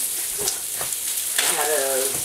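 Thick beef steak sizzling on an indoor grill, a steady high hiss with a few light clicks.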